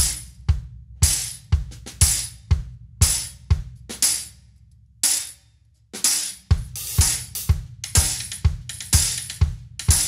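Drum kit playing a four-on-the-floor techno-style groove: bass drum on every beat, about two a second, under sharp, bright hi-hat and cymbal hits. The groove breaks off briefly about five seconds in, then comes back busier.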